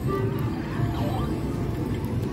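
Casino floor background music and low crowd rumble, with short electronic tones from a video poker machine as a new hand is dealt.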